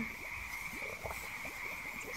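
Steady background ambience bed: a constant high-pitched band of sound with a few soft, short low sounds scattered through it.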